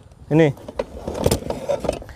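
A short spoken word, then handling noise as a golok (machete-style chopping knife) is picked up: irregular rustling and small clicks, with one sharper click about a second and a quarter in.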